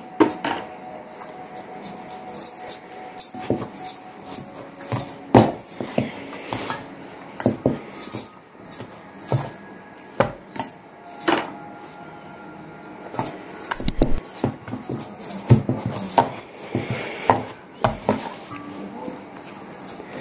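Bread dough being kneaded by hand in a stainless steel bowl, with irregular knocks and scrapes of dough and hands against the metal bowl.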